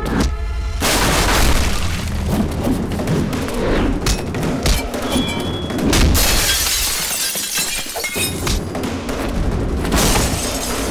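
Action-film fight soundtrack: a driving background score laid with heavy booming hits and body-impact effects, and glass shattering.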